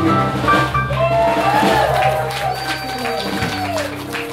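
Live band music with acoustic guitar: low notes held under the song's close, with voices over them rising and falling in pitch.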